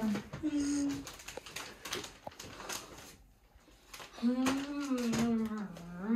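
A wordless voice humming a held note: briefly near the start, then longer from about four seconds in. In between come a few light clicks and rustles from handling things.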